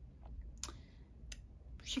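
A few faint mouth clicks and lip smacks from a woman pausing between words, over a low steady hum. Her voice comes back right at the end.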